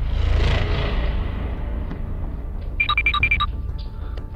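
Edited-in background music: a steady low drone with a swelling whoosh that fades over the first couple of seconds, then a quick run of bright, bell-like chime notes about three seconds in.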